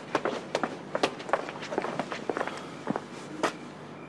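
Footsteps of two people walking on stone steps and paving: quick, irregular, sharp steps that thin out and stop about three seconds in.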